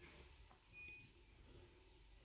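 Near silence, with faint soft sounds of a silicone spatula spreading ice-cream mixture in a plastic tub. A brief faint high beep sounds about a second in.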